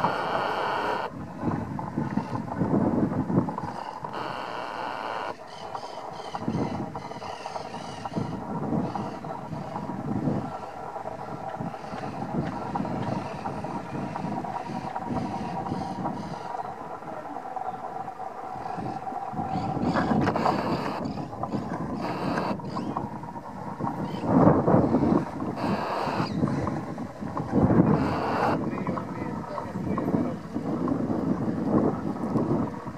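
Wind buffeting the microphone outdoors, an uneven rumble that swells in gusts, strongest in the second half.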